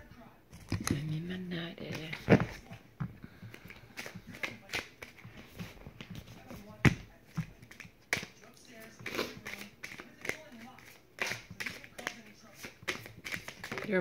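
Tarot cards being shuffled and handled, giving irregular sharp snaps and flicks throughout. A short low murmur of a woman's voice comes about a second in.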